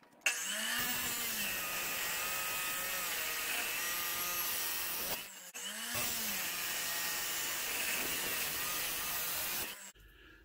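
Jepson dry-cut metal chop saw running and cutting through steel bar stock. There are two cuts, with a short lull just past five seconds in.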